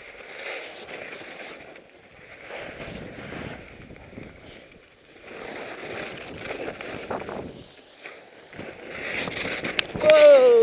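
Skis scraping and carving through hard, chopped-up snow in a run of turns, the scrape swelling and fading every second or two, with wind rushing over a head-mounted camera's microphone. A couple of sharp clicks come near the end.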